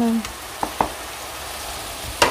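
Ground meat and chopped onion sizzling as they fry in a pot, stirred with a wooden spatula that clicks against the pot twice a little over half a second in.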